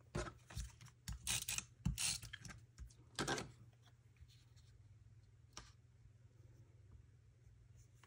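Paper crafting handling sounds: a cluster of short rustles and scrapes as a photo and a piece of cardstock are picked up and slid into place on a craft mat, settling to quiet with a faint low hum after about three and a half seconds.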